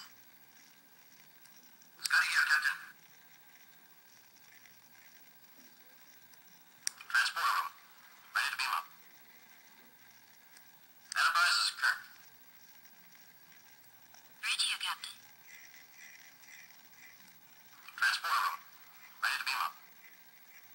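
Short recorded sound clips played through the small speaker of a Star Trek TOS communicator replica. There are about seven thin, tinny bursts, each under a second and spaced a few seconds apart.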